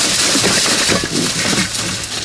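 Plastic crinkling and rustling as items are rummaged through and handled, a steady crackly hiss.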